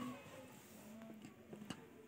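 Faint voices in the background, with one sharp click near the end.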